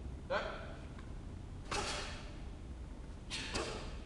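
Taekwon-do student performing a pattern: four short, sharp bursts as techniques are executed, from forceful breaths and the snap of the dobok. The first, about a third of a second in, is voiced like a clipped shout; one comes near the middle and two close together near the end.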